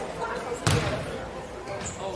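A basketball bounces once on a hardwood gym floor about a third of the way in, echoing in the hall, over faint background voices.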